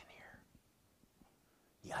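A man's voice: the soft, breathy end of a word at the start, then quiet room tone for over a second, then the start of a loud exclaimed 'Yipes' at the very end.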